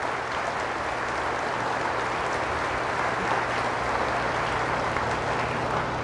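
A congregation applauding: dense, even clapping held at a steady level throughout, with a faint low hum underneath.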